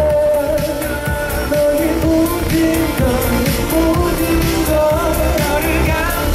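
A male pop singer singing into a handheld microphone over a K-pop backing track with a steady beat, holding long notes that bend up and down in pitch.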